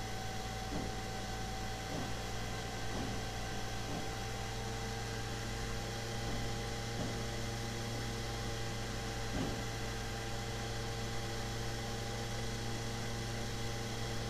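Steady electrical hum and hiss of the recording's background noise, with a few faint clicks.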